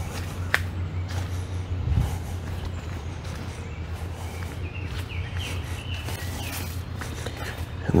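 Footsteps of a person walking down a dirt woodland trail, under a steady low rumble on the microphone. A few short high chirps come about five to six seconds in.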